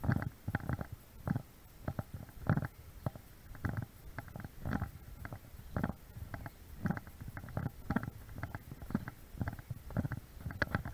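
Footsteps of someone walking on a concrete path, heard as muffled low thumps roughly twice a second.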